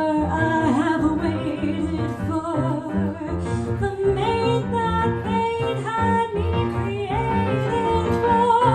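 A woman singing a jazz song into a microphone, her held notes wavering, backed by grand piano, guitar and upright bass.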